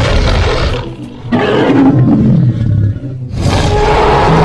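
Film sound effect of a Spinosaurus roaring: three long roars with short gaps between them, the second sliding down in pitch.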